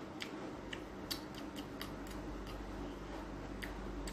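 A mouth chewing a bite of raw eggplant: faint, irregular crisp clicks of the chewing, about ten in a few seconds, over a low steady hum.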